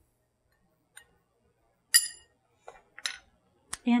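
Metal bar spoon clinking against a coupe glass while stirring a cocktail: a few separate clinks with a short, bright ring, the loudest about two seconds in.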